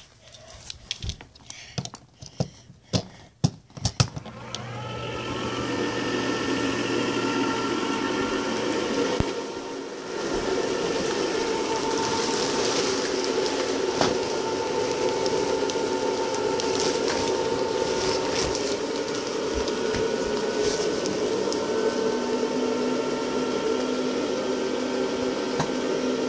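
A few handling knocks and clicks, then the electric inflation blower of a Gemmy inflatable snowman starts about four seconds in, rising in pitch as it spins up, and runs steadily while it inflates the snowman. The blower noise dips for a moment around ten seconds, then carries on at an even level.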